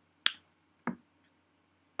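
Two short, sharp clicks about two-thirds of a second apart, the first louder, against faint room tone.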